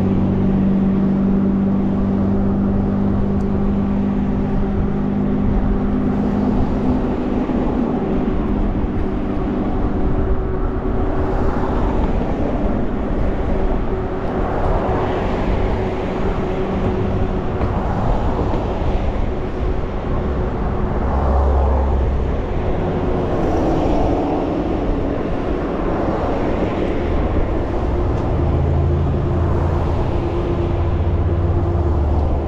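Road traffic passing close by in the next lane, several vehicles swelling up and fading away in turn, over steady wind rush and a low steady hum heard from a bicycle moving at about 20 mph.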